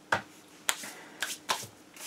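Hands handling small objects on a desk: four sharp clicks and taps, the first two about half a second apart and the last two close together, over a faint steady hum.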